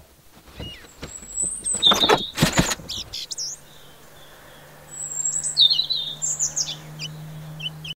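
Small birds chirping in short high calls, loudest in the second half. In the first three seconds, sharp knocks from a wooden hand loom mix with the chirps; a steady low hum sets in about three seconds in.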